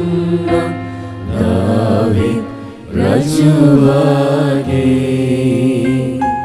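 Slow Catholic hymn singing in Sinhala, with long held notes that bend gently, over a steady sustained accompaniment.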